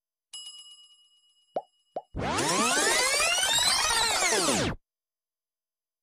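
Sound effects of an animated subscribe button: a bell ding that rings and fades, two short pops about a second and a half in, then a loud sweeping effect of many overlapping rising and falling tones lasting about two and a half seconds, which cuts off suddenly.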